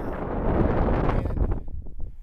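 Wind buffeting the camera microphone with a low, rumbling rush that eases off near the end.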